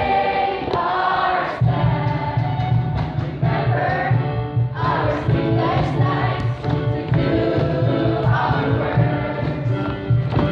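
A large school choir of girls and boys singing together, with a steady low accompaniment coming in about a second and a half in.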